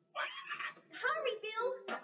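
A high-pitched cartoon parrot voice chattering and squawking in reply, with sliding pitch and no clear words, played through a television speaker.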